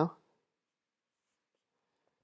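A spoken word trails off, then near silence with a couple of very faint taps from a stylus drawing on a graphics tablet.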